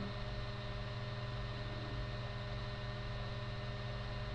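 Steady low electrical hum with faint hiss: the background noise of the recording, heard while no one speaks.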